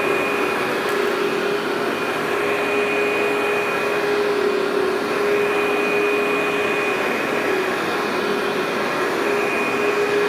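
Workhorse upright vacuum cleaner running steadily as it is pushed over low-pile commercial loop carpet. It gives a steady rushing hum with a thin high whine over it.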